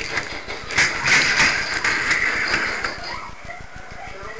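A plastic toy train being grabbed and moved by hand, with sharp clicks and clatter in the first second, then a steady noise for about a second and a half that dies away.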